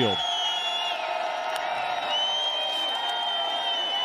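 Football stadium crowd noise, with long, high, whistle-like tones held over it, the first stepping down in pitch about a second in and another starting about halfway through.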